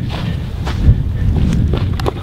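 Wind buffeting the camera microphone as a steady low rumble, with faint footsteps on dry ground as the camera is carried around.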